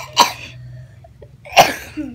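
A young girl coughing twice, about a second and a half apart.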